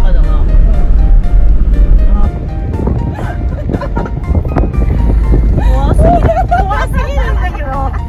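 Steady low rumble of a small car's engine and tyres heard inside the cabin as it drives, under background music and voices.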